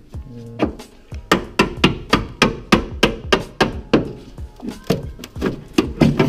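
Hammer blows knocking body filler (Bondo) out of a Honda Civic's rusted rear wheel-arch, a fast even run of sharp strikes about three to four a second.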